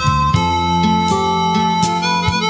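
Instrumental passage of a band recording: a held melody line over guitar, bass and drums, with cymbal strokes about every three-quarters of a second. The melody note steps down shortly after the start.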